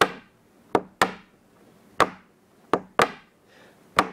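Sharp knocks on a hard surface keeping a steady beat, about one a second, with a quick extra knock just before every other beat.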